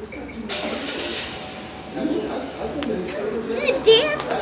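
A young child's voice vocalizing without clear words, ending in a short high-pitched squeal near the end. A brief rush of noise comes about half a second in.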